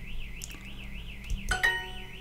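Duolingo app's correct-answer chime: a short bright ding of a few quick rising notes about one and a half seconds in, just after a click. A faint high warbling tone, about six wobbles a second, runs underneath.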